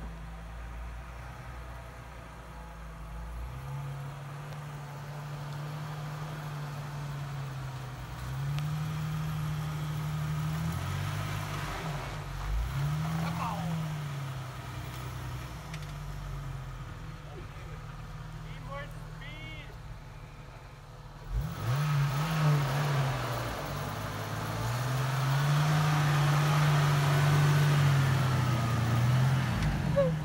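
Jeep Wrangler engine revving up and down again and again as it struggles for traction in deep snow, each rev rising and falling over a few seconds. About two-thirds of the way through it gets louder, with a rushing noise of the tyres spinning and churning snow.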